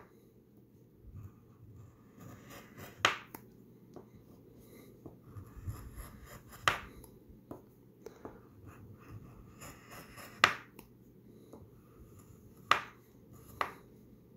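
A coin scraping the latex coating off a paper scratch-off lottery ticket in short, irregular strokes, with about five sharp clicks scattered through.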